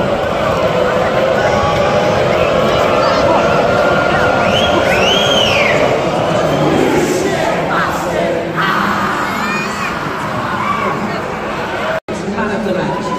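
Football stadium crowd chanting and cheering, with a whistle rising and falling about five seconds in; the crowd sound changes abruptly about two-thirds of the way through.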